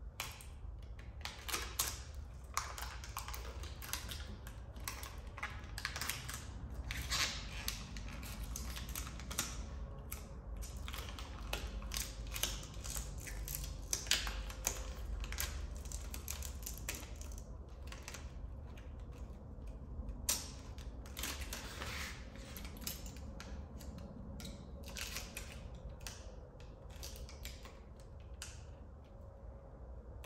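Plastic transfer film crinkling and crackling as it is handled and peeled back while a textured vinyl overlay is pressed down by hand onto a car's rear spoiler: many small irregular crackles and clicks, over a low steady hum.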